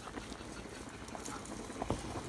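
Pot of water at a rolling boil with spaghetti in it, bubbling with many small irregular pops, and a single sharper knock near the end.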